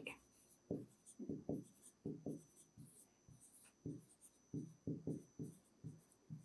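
Faint, short pen strokes on a writing board, coming in irregular bursts with brief pauses as a word is written out by hand.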